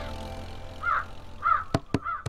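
A crow cawing twice over a held music chord that fades out, with two sharp clicks near the end.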